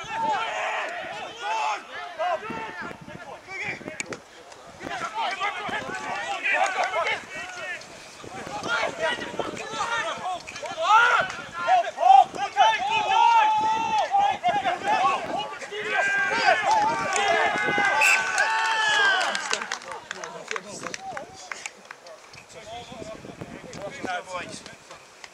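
Several voices shouting and calling out across a rugby pitch during open play, overlapping and most continuous through the middle of the stretch, then dying down near the end.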